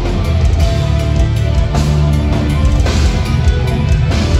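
A heavy metal band playing live, loud and continuous, with electric guitars and bass.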